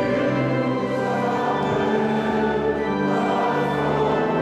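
Congregation singing a hymn with organ accompaniment, in slow, long-held notes.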